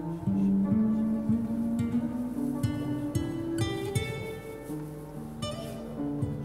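Acoustic guitar and upright piano playing an instrumental passage together, plucked guitar notes over held piano notes, with a line of notes climbing step by step over the first four seconds.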